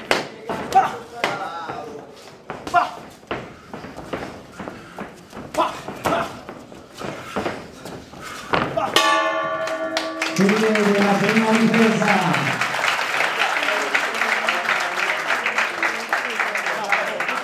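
Boxing match sound: sharp gloved punch impacts and scattered shouts for the first nine seconds, then a short steady end-of-round signal tone about nine seconds in. After it, crowd applause and cheering with one long yell.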